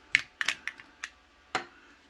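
Sharp plastic clicks and taps, about six in the first second and a half, irregularly spaced, as a plastic phone clamp is fitted against a small tripod's ball head.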